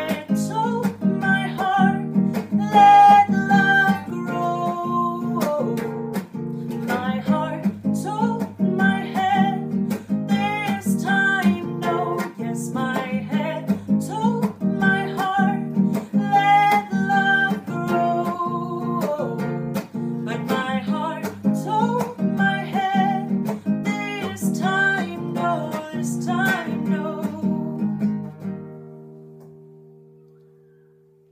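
Acoustic guitar strummed in a steady rhythm with a woman singing over it. Near the end the strumming stops and the last chord rings out and fades.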